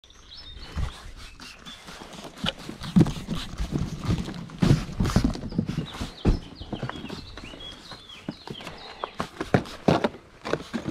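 Irregular knocks, bumps and rustles from cardboard boxes and small wood-and-metal frames being handled and set down on a concrete block, the loudest knocks about three and five seconds in.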